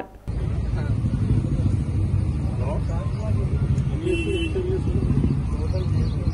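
Steady low rumble of outdoor background noise with faint indistinct voices, and a brief high-pitched chirp about four seconds in.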